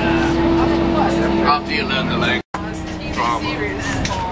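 Bus engine running with a steady low drone heard from inside the passenger cabin, under loose chatter of passengers. The sound cuts out completely for a split second about halfway through.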